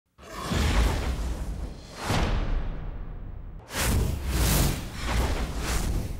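Whoosh sound effects of an animated intro graphic: about five sweeping swooshes over a low bass rumble.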